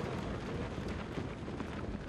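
Steady low rumbling wind noise on the camcorder microphone, with faint scattered footfalls of Marines running off on gravel.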